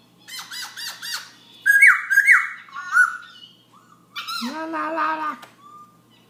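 Caged black-throated laughingthrush singing at night: quick runs of loud, slurred whistles, then a lower drawn-out note of about a second near the end.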